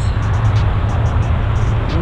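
Steady low rumble and rushing noise of road traffic outdoors, with no distinct events.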